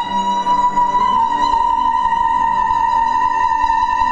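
Female operatic voice holding one long high note, with piano chords sounding beneath it.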